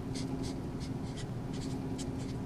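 Felt-tip marker writing on paper: a quick series of short scratchy strokes as symbols are drawn.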